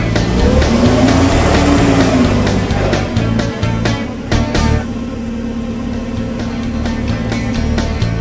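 LPG forklift engine revving up and back down as the hydraulics lift the forks, over background music with a steady beat. The engine then runs steadily.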